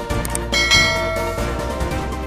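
A bright bell-like ding, a notification-bell sound effect, rings out under background music a little under a second in and fades within about a second, with two faint clicks shortly before it.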